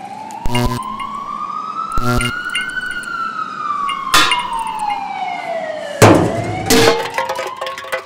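Sound effects for an animated logo outro: a long siren-like tone that glides up for about three seconds, down for about three more, then starts rising again, with heavy metallic clanks and hits about half a second, two, four and six seconds in.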